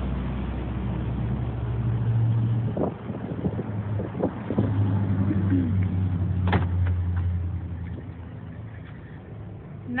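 Low, steady hum of an idling vehicle engine, with scattered clicks and a sharp click about six and a half seconds in as the Jeep's door is opened; the hum fades near the end.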